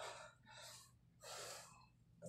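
A man breathing hard, out of breath from exercise: three heavy, breathy gasps a little under a second apart.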